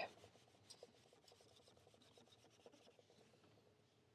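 Faint rubbing of an ink-laden cotton swab dragged across paper, with a few soft ticks.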